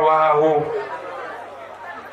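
A man's voice over a microphone, drawing out one long word for about the first second, then quieter background chatter.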